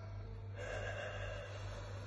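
A man taking one long, deep breath, about a second long, as he sits in the cold water of an ice bath, over a steady low hum.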